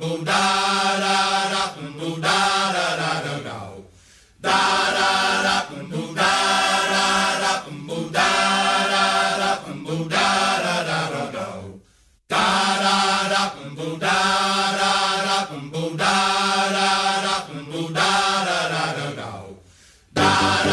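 Music: the opening of a song, voices singing sustained 'da' syllables with little or no accompaniment, in phrases of about two to four seconds, three of them ending in a sliding drop in pitch.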